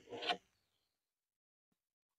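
Near silence, after a brief faint rubbing or scraping sound in the first moment.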